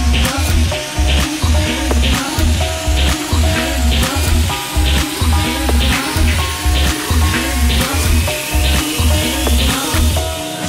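Techno track with a steady four-on-the-floor kick drum about two beats a second under short, repeating synth notes, and a rising sweep building over the last couple of seconds.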